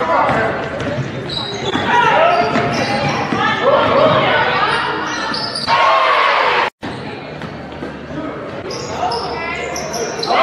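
Live basketball game sound echoing in a gym: the ball dribbling and bouncing, sneakers squeaking in short rising and falling chirps on the hardwood, and players' voices calling out. The sound drops out for a moment about two-thirds through, where one clip cuts to the next.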